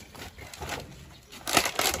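Digging around a sapling's roots in dry soil: scraping and crackling of earth and roots with a few clicks, with a louder burst of scraping in the last half second.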